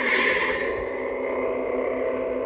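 Lightsaber hum from a Proffieboard saber's speaker just after a switch to a new sound font, the Darth Sidious font: a steady hum of several held tones, loudest at the start and then settling.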